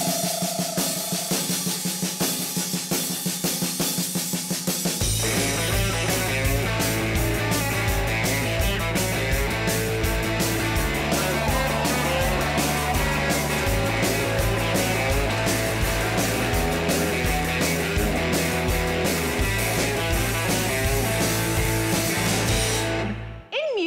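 Live rock band playing an instrumental: drums alone at first, then bass guitar and electric guitar come in about five seconds in, with a bass line that steps between a few notes under the drums and guitar.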